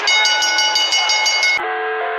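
A wrestling ring bell rung rapidly, about seven strikes a second, signalling the end of the match. It cuts off about one and a half seconds in, and music with held chords takes over.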